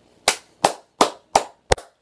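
Five sharp hand claps, about three a second, the last one doubled.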